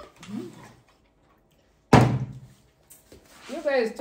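A single hard thud about two seconds in, something landing on a hard surface, fading quickly.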